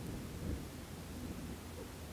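Quiet room tone: a faint low rumble, with one slight soft bump about half a second in.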